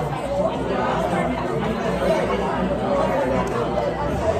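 Indistinct chatter of many diners talking at once in a busy restaurant dining room.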